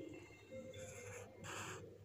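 Faint scratching of a graphite pencil (a Nataraj 621) on notebook paper: a few short, soft strokes.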